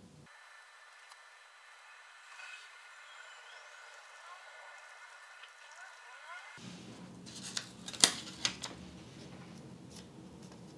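A pen writing on a sticky-note pad, faint. About seven seconds in come a few sharp clicks and taps, the loudest about a second later, as the pen and the note are handled.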